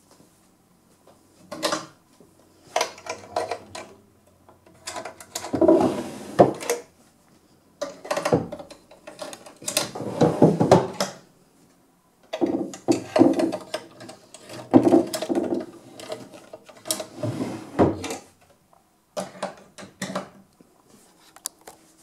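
Wooden desk drawers being slid open and pushed shut one after another: wood rubbing along the runners, with sharp knocks as they stop, in about six separate bouts.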